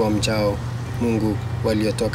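A man reading aloud in a language other than English, in short spoken phrases, over a steady low hum.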